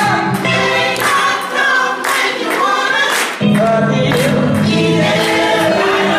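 Church choir singing a gospel song. The low bass drops away for a couple of seconds midway and comes back in strongly about three and a half seconds in.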